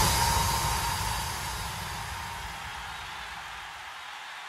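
Transition in an electronic DJ mix: a beatless wash of noise left by a big hit, fading slowly away with a faint steady tone inside it.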